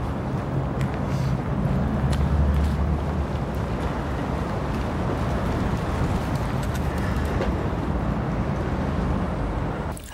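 Steady low rumble of a motor vehicle, with a few faint clicks.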